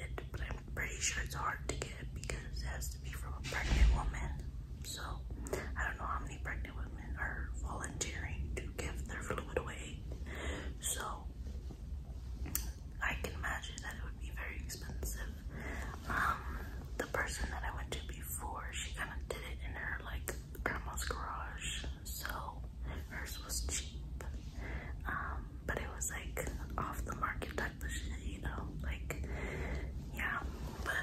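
A woman whispering to the camera in short, broken phrases, with a brief thump about four seconds in, over a steady low room hum.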